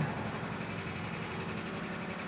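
Steady whirring hum of the 1958 Ford Fairlane 500 Skyliner's power-retractable hardtop mechanism, its electric motors running as the top rises out of the trunk.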